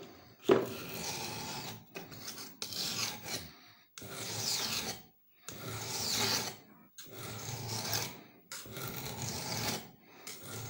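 A knife blade is rubbed along a wet fine whetstone in about six long sharpening strokes, each lasting a second or so with a short pause between them. A knock comes about half a second in.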